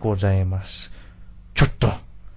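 A voice speaking briefly, then two short, sharp cartoon sound effects in quick succession near the end.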